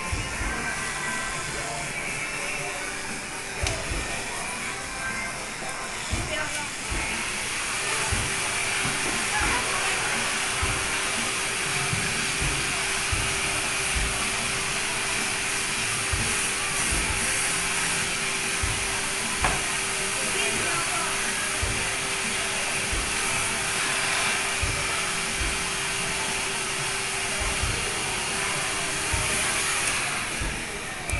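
Electric hair clippers running steadily as they cut a child's short hair, heard over background music and voices.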